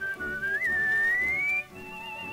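Whistled refrain of a 1932 dance-orchestra record: a single pure whistled melody line slides gradually upward, breaks briefly near the end, and returns on a higher held note. The dance orchestra's accompaniment sounds softly beneath it.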